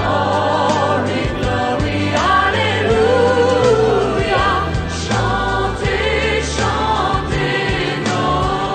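Choir singing with vibrato over musical accompaniment with sustained low bass notes.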